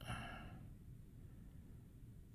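A short, soft exhale, like a sigh, lasting about half a second, then near silence.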